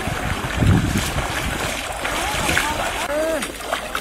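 Water splashing around legs wading through shallow river water, with wind rumbling on the microphone. Voices call out in the background in the second half.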